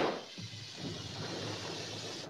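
Explosive decompression of a pressure-suit test chamber: a sharp bang as the chamber's membrane bursts, then a steady rush of air escaping as the pressure drops suddenly.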